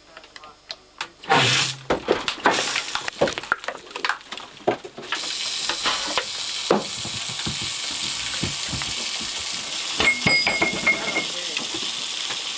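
Clicks and knocks of equipment being handled, then about five seconds in a steady hiss of air rushing from a hose or pipe starts suddenly and keeps going. A short high tone sounds briefly near the end.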